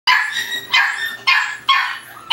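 Cream Shar-Pei puppy barking: four high-pitched yapping barks about half a second apart.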